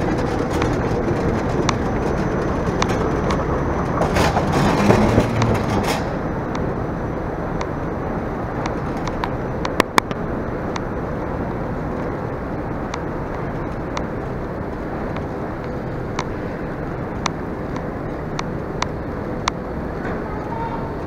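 Metal luggage trolley rolling on a moving walkway with a steady rumble, rattling louder for a couple of seconds about four to six seconds in, then rolling more quietly over carpet with scattered light clicks and two sharp clicks about ten seconds in.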